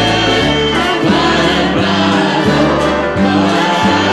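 A mixed group of men's and women's voices singing a country gospel song together in harmony, with band accompaniment and steady bass notes underneath.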